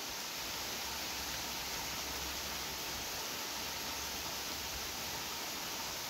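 Heavy rain falling steadily, an even hiss.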